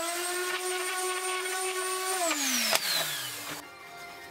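Random orbital sander running at a steady speed on a wooden strip, then winding down with a falling whine about two seconds in. A sharp click comes during the wind-down, and quiet background music takes over at the very end.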